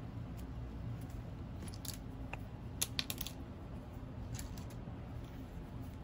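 Faint handling sounds of grosgrain ribbon and sewing thread as the gathered centre of a hair bow is stitched and pulled tight by hand, with a few light clicks and ticks around the middle.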